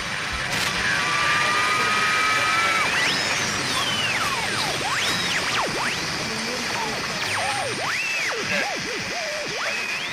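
A thin pitched tone over a steady hiss. It holds level for about two seconds, then swoops up and down in pitch in rapid, wide glides.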